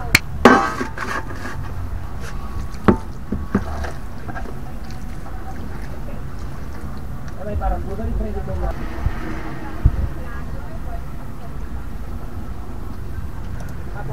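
A few sharp clicks and knocks of handling over a steady low hum.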